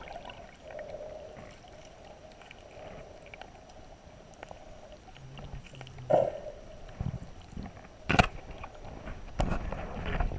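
Muffled sound of shallow water moving around a submerged camera, with a few knocks and bumps on the camera housing, the sharpest about eight seconds in.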